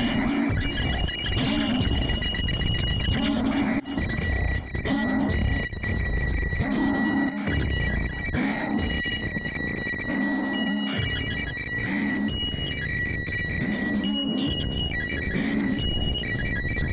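Electronic noise music from a patched Plumbutter synth mixed with monome-triggered one-shot samples. A low pulsing beat recurs about once a second under a bed of harsh noise and clicks, while thin high whistling tones switch on and off.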